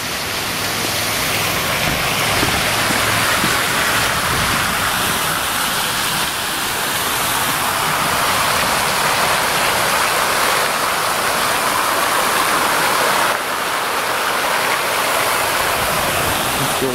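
Fountain water pouring down a brick water wall and jets splashing into a pool: a steady rushing and splashing that grows louder over the first few seconds.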